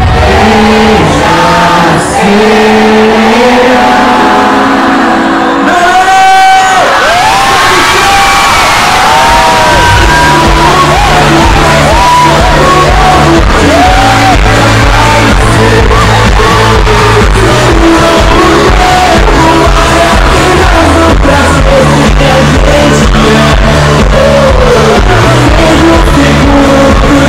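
Loud live pop concert music heard from within the crowd: sung vocals over the band through the PA, with a heavy bass beat coming in about ten seconds in, and crowd noise underneath.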